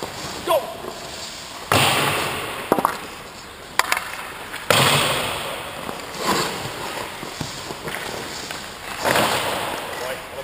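Hockey goalie's skate blades and leg pads scraping and sliding on the ice in three sudden rushes, each fading over a second or so, as he drops and pushes across the crease, with a few sharp clicks in between.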